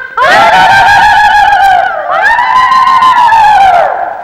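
Women's kulavai ululation, a traditional Tamil celebratory cry: two long, high, trilled calls of about two seconds each, each arching up and falling away in pitch.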